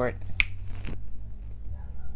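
A single sharp finger snap about half a second in, over a low steady hum.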